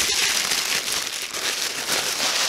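Crinkling and rustling of crumpled wrapping paper as a wrapped sprayer bottle is unwrapped by hand, an uneven crackle with no rhythm.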